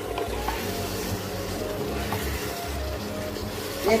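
Mutton and powdered spices sizzling steadily in hot oil in a cooking pot, with faint music underneath.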